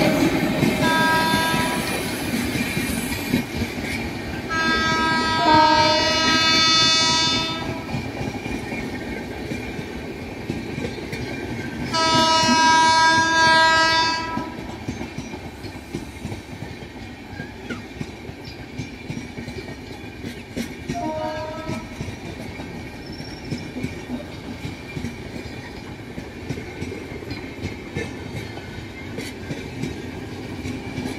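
Electric locomotive horn sounding four times: a short toot about a second in, then two long blasts of about three and two and a half seconds, and another short toot near the twenty-second mark. Underneath, an Indian Railways passenger train's coaches roll past steadily, their wheels clicking over the rail joints, the clicks standing out more clearly in the later part.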